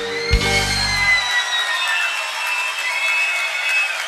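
A live band ends a song on a final hit about a third of a second in, and the low end dies away after about a second. What is left is the audience cheering, with high drawn-out tones over it.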